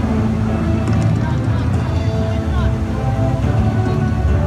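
Loud, steady outdoor din: a low rumble with indistinct voices and music from a public-address system mixed in.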